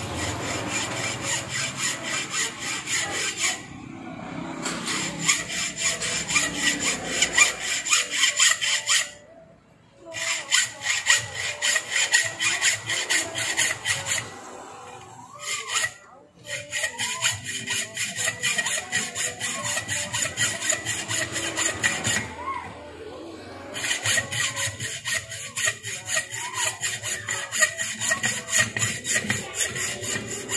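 Hand hacksaw cutting through the laminated steel core of an electric motor stator, in quick back-and-forth strokes several times a second. It stops briefly about four times before carrying on.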